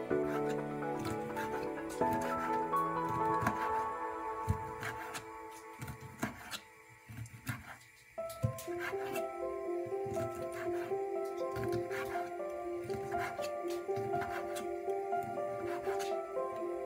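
Background music, with the occasional knock of a knife chopping squid against a wooden cutting board. The music drops away about six seconds in, leaving mostly the chops, and a new melody starts about two seconds later.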